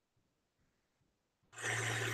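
Near silence for about a second and a half, then an airy hiss of air drawn through a vape mod, with a steady low hum underneath.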